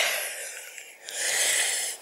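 A woman's breathing close to the microphone: a breath out fading away over the first second, then a breath drawn in over the last second.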